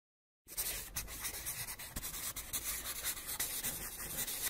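A scratchy scribbling sound effect, as of a pen on paper, starting about half a second in and going on unevenly.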